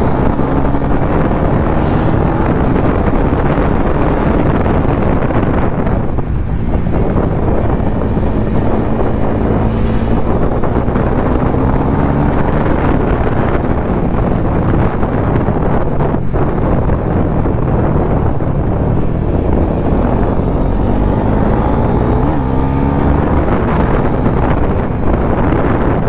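Bajaj Pulsar NS400Z's 373 cc single-cylinder engine running under way. Its pitch climbs several times as it pulls, under heavy wind noise on the handlebar-mounted camera's microphone.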